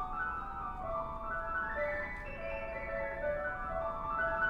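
Solo piano playing live, with rippling runs of ringing notes that sweep up and down in waves.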